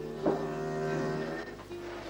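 A cow mooing once, about a second long, over soft background music.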